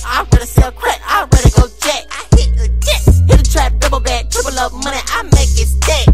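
Trap track: rapped vocals over a beat with heavy 808 bass and sharp drum hits. The bass drops out briefly and slams back in a little after two seconds.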